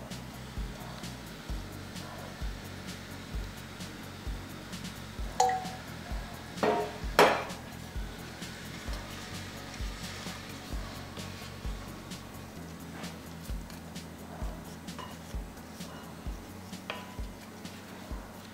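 Background music with a steady beat, over a wooden spoon stirring dry tapioca starch in a glass bowl. A few sharp clinks of the spoon against the glass ring briefly between about five and seven seconds in, the last the loudest.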